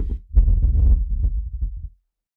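A recording of a candle flame, heavily processed into a dense, bass-heavy sound effect, played back as a deep low rumble with crackles over it. It dips briefly just after the start and cuts off abruptly shortly before the end.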